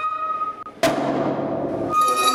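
Orchestral music: a single high note held, then, a little under a second in, a sudden loud chord with a percussive hit that is held on.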